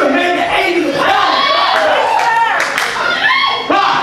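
A man preaching in a loud, excited voice through a microphone and PA, his pitch swooping up and down.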